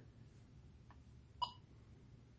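A faint tick, then a single short, sharp click about one and a half seconds in, against a quiet background: the joystick module's paddle switch being pressed as a mouse click.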